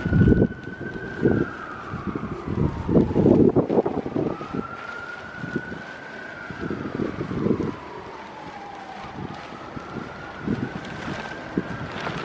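Emergency vehicle siren wailing, its pitch slowly rising and falling about every five seconds, over footsteps on the pavement and wind on the microphone.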